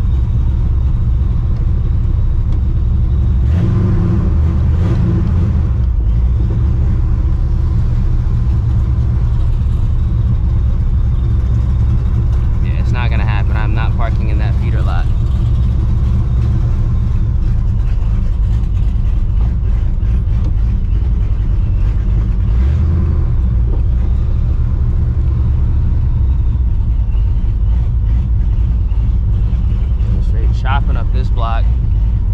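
The cammed, Procharger-supercharged 5.4 2V V8 of a 1999 Mustang GT running at low speed, heard from inside the cabin: a steady low rumble with a couple of brief swells of throttle.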